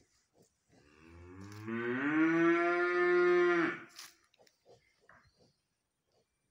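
A Holstein-Friesian heifer mooing once: a single long call of about three seconds that climbs in pitch at the start, holds steady, then cuts off sharply.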